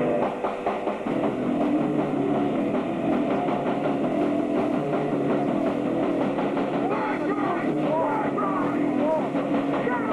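Amateur punk rock band playing live in a garage: distorted electric guitar, bass and drum kit, with the full band coming in about a second in and then running at a steady, loud level.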